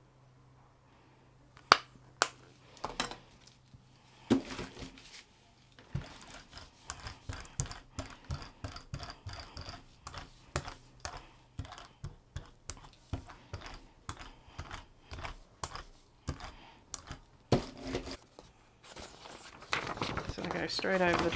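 A few sharp clicks as a paint tube is handled and squeezed, then a brayer rolling back and forth through wet acrylic paint on a gel printing plate, a tacky rolling stroke repeated about twice a second.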